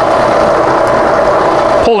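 Bridgeport milling machine running at low speed with a bimetal hole saw cutting into 3/8-inch steel plate under light hand feed: a steady mechanical whir with a fine, rapid ticking from the saw teeth.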